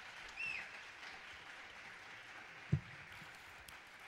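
Audience applauding, fairly faint and steady, with a brief whistle from the crowd early on and a single low thump about two-thirds of the way through.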